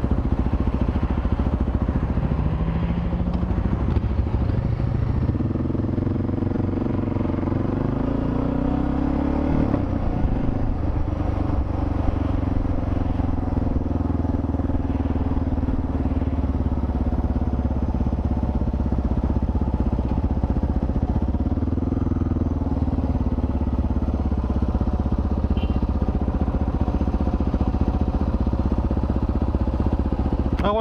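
Motorcycle engine pulling away, rising in pitch as it accelerates from about five to ten seconds in, then running steadily at cruising speed with heavy low road and wind noise.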